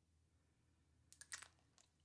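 Near silence, with a few faint short clicks a little past the middle.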